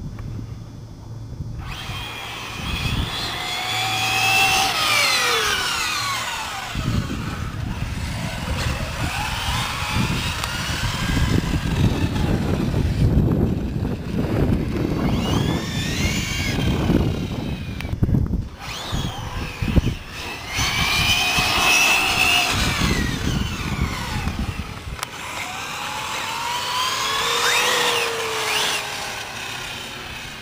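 Radio-controlled cars running hard: their motors whine in repeated sweeps, the pitch rising and falling as they accelerate, slow and pass, over a steady low rumble.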